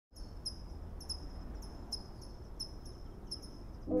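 A cricket chirping in short, regular high chirps over a low, steady rumble of evening ambience. Music with sustained horn-like chords comes in near the end.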